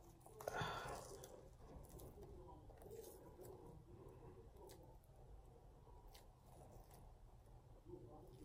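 Near silence: room tone, with a brief soft sound about half a second in and a few faint ticks.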